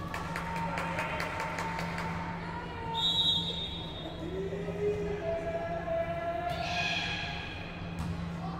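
Volleyball hall sounds: a quick run of sharp claps or ball bounces in the first two seconds, then a single referee's whistle blast about three seconds in to start the serve. Players' calls and shouts follow, over a steady low hum in the echoing gym.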